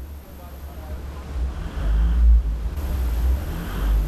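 Low rumble of the Isuzu D-Max V-Cross diesel pickup creeping over a rough, rocky track, heard from inside the cabin; it swells about a second in and eases a little near the end.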